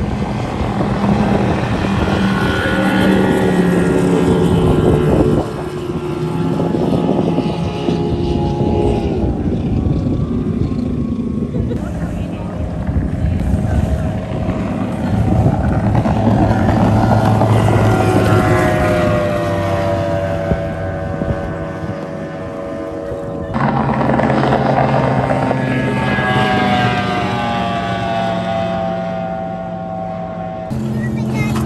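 High-performance race boat engines running at full throttle as boats make fast passes, the engine note sliding down in pitch as a boat goes by. The sound jumps abruptly three times as one pass gives way to another.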